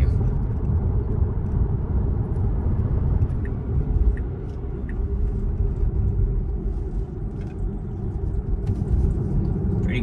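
Steady road and tyre rumble inside the cabin of a Tesla electric car while it drives along a paved road.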